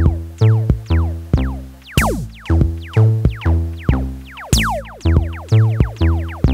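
Electronic dance track with deep pitched bass-drum hits at a little over two a second, layered with quick downward-sweeping synth zaps and a short bright hiss twice.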